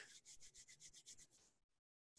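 Near silence: a very faint hiss on the call line that drops to dead digital silence a little after the middle.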